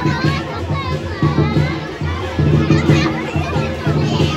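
Lion-dance drums beating a quick, steady rhythm, mixed with the chatter and shouts of a crowd that includes children.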